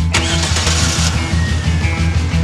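Music with a steady beat plays over a car engine starting just after the start, a noisy burst of about a second that then settles under the music.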